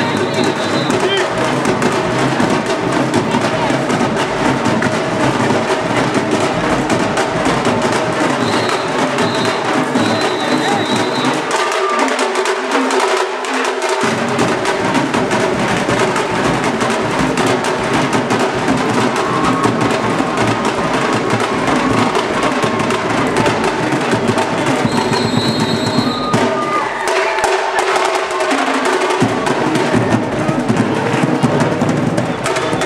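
A drum group playing a continuous rhythm on snare-type drums and a large bass drum, loud and steady throughout.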